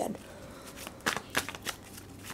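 A tarot deck being shuffled by hand, the cards slipping against each other in a string of short, soft flicks from about a second in.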